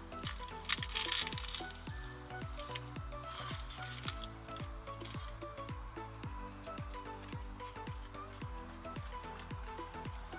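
A loud crunch of a bite into a hard-shell Doritos Locos taco about a second in, and more crunching chews a few seconds later. Background music with a steady beat plays underneath.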